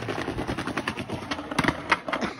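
Skateboard wheels rolling over brick pavers, a fast, irregular clatter of clicks from the joints over a low rumble, with a few louder sharp clacks near the end.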